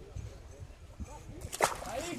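A single sharp splash about one and a half seconds in, as a released golden dorado hits the water.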